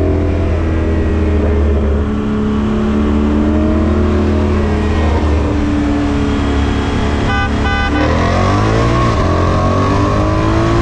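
Car engine holding steady revs, then about eight seconds in pulling hard under full throttle, the revs climbing with an automatic upshift about a second later before they climb again. A brief rapid run of clicks comes just before the pull.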